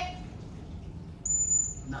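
A trainer's whistle blown once, a single short, steady, high note lasting about half a second, a little past the middle. It is the bridge signal telling the polar bear that touching his nose to the target was right and that a food reward is coming.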